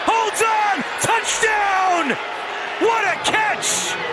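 Excited male voices of television commentators calling out over a touchdown catch, in short rising and falling exclamations. A short hissing burst comes near the end.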